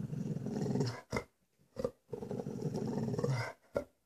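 A dog growling in two long low rumbles, with short sharp sounds between and after them.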